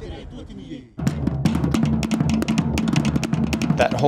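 Fast Tahitian drumming starts suddenly about a second in: rapid, dense strokes over deeper, sustained drum tones.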